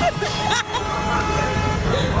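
A vehicle horn held in one long, steady blast, with voices and laughter over it.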